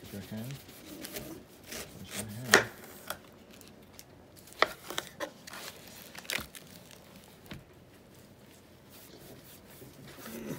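Kitchen knife cutting the rind off a whole pineapple on a wooden cutting board: irregular sharp knocks and crunchy slicing strokes, the loudest about two and a half seconds in.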